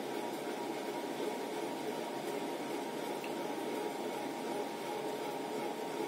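Steady, even background hiss of room noise with no distinct sound events.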